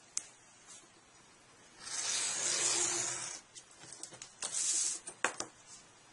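Cardstock being handled and cut with a hobby knife along a steel ruler: one long paper swish of about a second and a half, a shorter swish about two seconds later, and a few sharp ticks.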